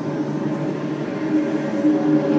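A steady low drone of several held tones, growing louder.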